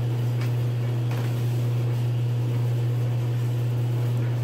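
Steady low mechanical hum of laundry-room machines, with a couple of faint clicks about half a second and a second in.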